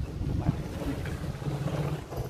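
Wind buffeting the microphone: a low, uneven noise with no clear tone or rhythm.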